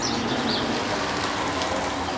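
A car passing on the street, its tyres giving a steady hiss, with a few short bird chirps over it.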